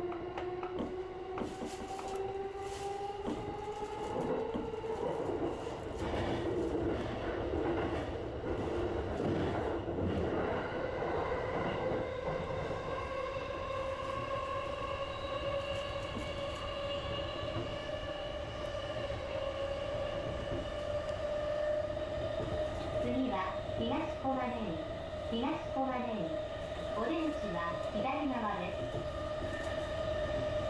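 JR East E233 series electric train running: its traction motors whine with a rising pitch as it accelerates away from a station, then settle to a near-steady whine as it cruises, over the rumble of wheels on rail. Near the end an onboard automated announcement begins.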